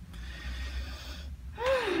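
A woman breathing out long and audibly, then making a short voiced sound that rises and falls in pitch near the end.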